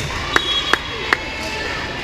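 Four sharp smacks of a volleyball in quick succession, all within about a second, in a reverberant gym.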